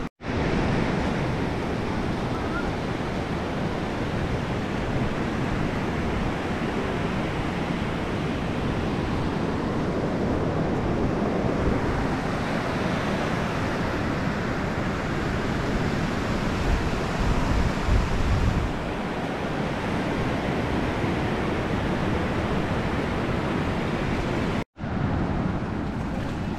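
Ocean surf breaking and washing up a sandy beach, a steady rush of waves with wind on the microphone. The sound cuts out for an instant near the end.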